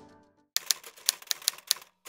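Typewriter keystroke sound effect: a run of sharp clicks, about five a second, beginning about half a second in as the background music fades out.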